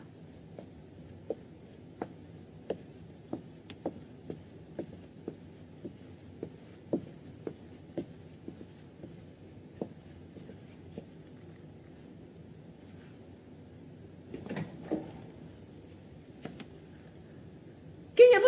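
Faint footsteps of a man climbing a staircase, short steps about two a second for the first ten seconds or so, over a steady background hiss. A brief, louder knock or rustle comes about fifteen seconds in.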